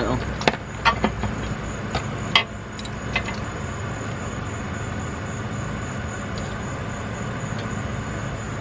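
Several sharp metal clicks and knocks, mostly in the first three seconds, as a cap-type oil filter wrench on a ratchet is fitted to and turned on a spin-on oil filter. A steady background hum follows.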